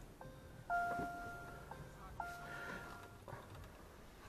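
Volkswagen Passat GTE dashboard chime: a short series of steady electronic tones, two of them held about a second each, as the plug-in hybrid is switched on with its petrol engine not running.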